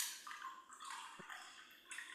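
Faint room noise picked up by an open microphone on a video call, with a small click just after a second in.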